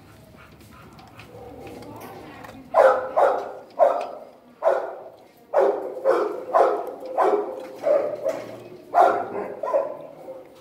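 A dog barking repeatedly: about a dozen loud barks in quick succession, starting about three seconds in.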